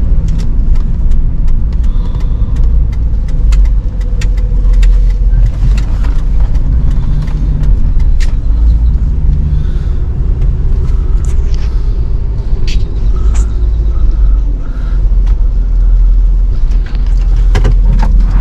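Inside a slowly moving vehicle's cabin: a steady, loud low rumble of engine and road, with scattered light clicks and rattles.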